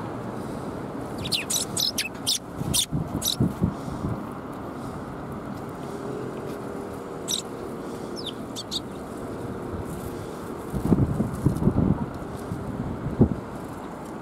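Eurasian tree sparrows chirping: short, high chirps in two clusters, one in the first few seconds and another about halfway through, over a steady low background rumble. Two spells of louder low bumps come early and again near the end.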